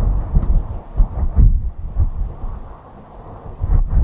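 Wind buffeting the camera microphone: a loud low rumble that comes and goes in gusts.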